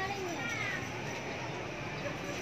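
Busy market hall ambience: a voice in the background speaks briefly in the first second, then steady crowd and room noise with no distinct events.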